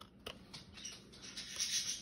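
Hockey cards sliding and rubbing against one another as a stack is flipped through by hand, with a couple of light clicks about a quarter second in. The rustle grows louder near the end.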